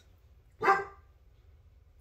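A pet dog barks once, a single short bark about half a second in.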